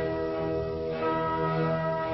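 Musical score of sustained, bell-like chords with an organ-like sound, held tones shifting to a new chord about a second in.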